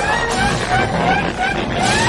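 Heavily processed, distorted meme audio effect: a quick run of short upward-sliding chirps, about three a second, over a dense noisy rumble. A longer rising glide begins near the end.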